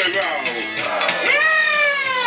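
Electronic keyboard music: steady sustained low notes from the backing, with a long high tone that swoops up about halfway through, holds, then slides slowly down.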